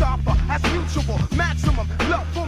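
Boom bap hip-hop track: a rapper delivering fast verses over a steady bass line and drum beat.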